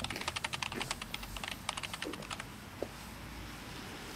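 Computer-keyboard typing sound effect: a rapid run of clicks, about ten a second, that stops about two and a half seconds in, leaving a steady low background noise.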